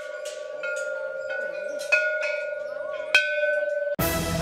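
Hanging metal temple bells struck one after another, about six strikes in a few seconds, each ringing on under the next; the sharpest strike comes near the end.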